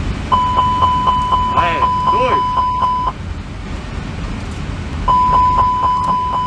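Airbus A321 cockpit fire warning, the continuous repetitive chime, set off by a fire-panel test: a rapidly repeating high chime at about four a second. It sounds for about three seconds, stops, and starts again about five seconds in. It is the alert that is 'not good to hear'.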